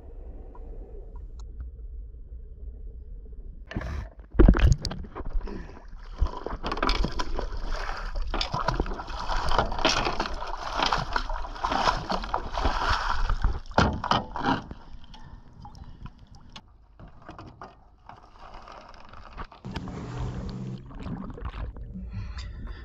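Water splashing and sloshing as a galvanized steel Spade anchor is hauled by hand up out of the water alongside a boat's hull. There is a low rumble at first, a heavy thump about four seconds in, and then the splashing, which is loudest in the middle and dies down near the end.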